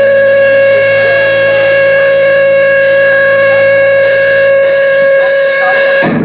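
Electric guitar feedback through a distorted amplifier: one loud, unchanging held tone with a steady ring of overtones.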